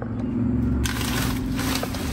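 Black plastic garbage bags rustling and crinkling as they are rummaged through, the rustling starting about a second in, over a low steady hum.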